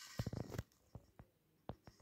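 Faint small clicks and ticks: a quick cluster in about the first half second, then a few single ticks further apart.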